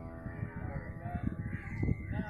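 Outdoor ambience with low rumbling noise on the microphone and a few short distant calls in the middle. The tail of background music fades out at the start, and a single knock comes near the end.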